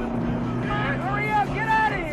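A man whooping in high yells that rise and fall, about three times, starting near the middle, over the steady low drone of a vehicle engine and film score.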